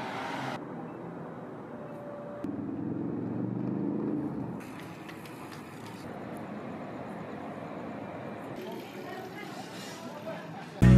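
Quiet outdoor city street ambience: a steady hum of distant traffic, changing abruptly several times as the recording cuts between shots. A louder low rumble, like a passing vehicle, lasts about two seconds in the middle.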